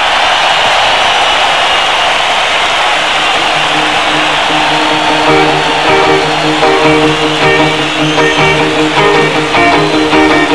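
Live electric guitar solo: a sustained wash of guitar sound gives way, about halfway through, to quick repeating notes that echo and stack up over one another.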